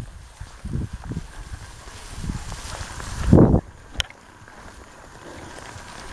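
Wind rumbling on the microphone of a rider moving across open grassland on horseback, with irregular low thumps from the ride. A louder thump comes about three and a half seconds in, followed by a sharp click.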